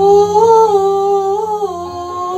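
A woman's voice holding one long wordless note, wavering slightly, then stepping down in pitch near the end.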